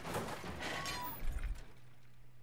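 Glass shattering, a noisy crackling crash that fades out about a second and a half in.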